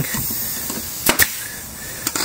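Pneumatic brad nailer firing once about a second in, a sharp double crack as it drives a nail through fleece into plywood, over a steady hiss.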